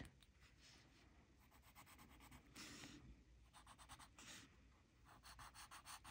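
Faint scratching of a graphite pencil shading on a small paper tile, in quick back-and-forth strokes that come in short runs.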